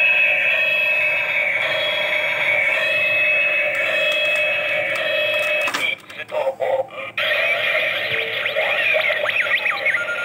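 DX Ixa Driver toy belt playing its electronic sound effects through its small speaker: a steady looping tone for about six seconds, then a sharp click as the Ixa Knuckle is set into the belt, a brief broken pause, and a new, busier electronic effect.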